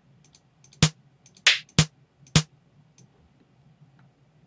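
Electronic snare drum samples previewed one after another from a sample browser: four short, sharp snare hits within about a second and a half, the second with a longer, noisier tail.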